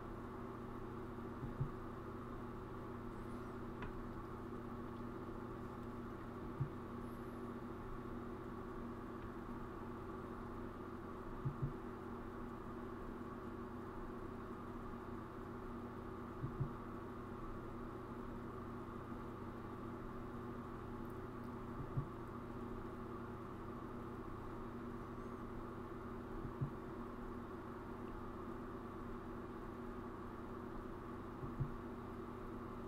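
Steady low electrical hum made of several held tones, with a soft low thump about every five seconds.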